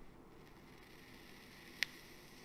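Quiet room tone with one sharp, short click near the end.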